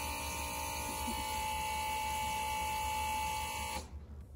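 Electric fuel pump of a homemade injector test bench running with a steady buzzing whine, pressurizing the fuel rail for an injector leak test; it cuts off suddenly near the end.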